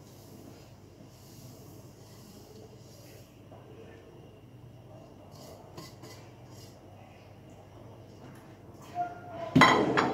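Quiet, steady background while sugar is poured into a pot of milk. Near the end a stirring spoon strikes the metal pot with a sharp, ringing clank as stirring begins.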